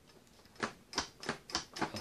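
A run of sharp metallic clicks, about three a second, from the bolt and lever of a combination lock's case being worked by hand; the dialed combination does not release the bolt.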